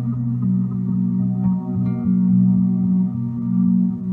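Empress ZOIA pedal running a microloop/delay patch, putting out layered, sustained looped tones. The notes change every second or so.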